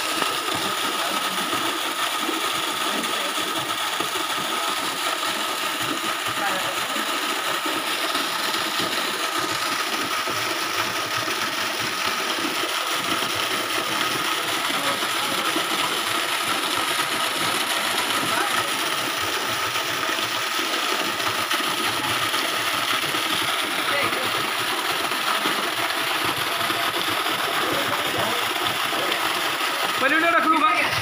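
Steady rush of a stream of water pouring into the water of a well, even and unbroken, with a thin steady high tone running through it.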